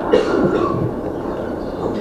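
A pause in a speech: steady room noise picked up by a podium microphone, with a short breathy sound just after the start.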